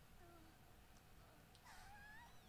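Near silence, with a faint high-pitched character voice from an anime soundtrack: a short hesitant "uh" and brief gliding vocal sounds, a little louder near the end.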